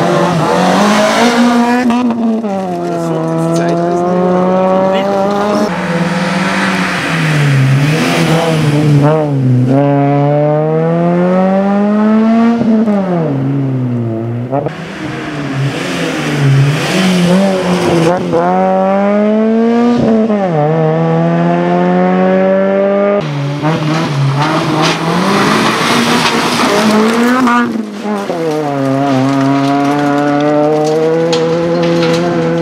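Suzuki Swift rally cars' four-cylinder engines revving hard and dropping away again and again, with quick gear changes and lifts for corners as the cars pass on a rally stage. Tyre noise comes and goes with the passes.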